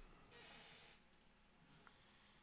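Near silence: room tone, with a faint soft hiss lasting under a second near the start.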